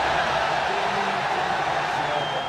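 Steady, loud hiss of heavy rain falling.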